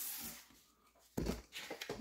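Faint handling noise from trading cards and packaging: a soft brushing hiss at the start, then a short low bump a little over a second in.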